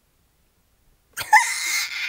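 About a second of silence, then a girl's sudden breathy laugh, loud and squeaky at its start, running on into talk.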